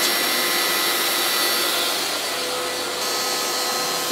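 DeWalt router running as the spindle of an X-Carve CNC, its spiral upcut bit climb-cutting a circle into walnut-veneered MDF. It makes a steady whine over a rushing cutting noise.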